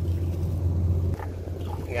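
A small river boat's engine running steadily, a low hum that eases a little just over a second in.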